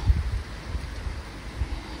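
Wind rumbling on the microphone, gusting hardest in the first half second, over a steady faint hiss of light rain.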